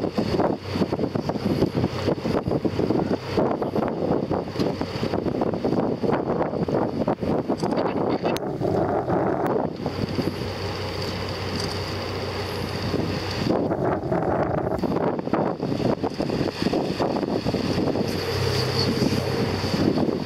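Wind buffeting the microphone over the steady low hum of a boat's engine.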